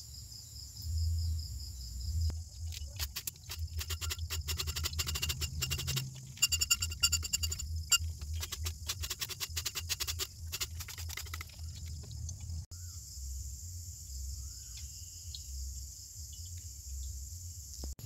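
Steady chirping of crickets over a low hum, with a run of rapid clicks from about two to twelve seconds in.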